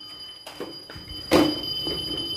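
A steady high-pitched electronic tone, like a buzzer, held throughout, with a short knock about one and a half seconds in.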